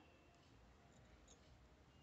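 Near silence: faint room tone, with a couple of very faint light ticks about a second in.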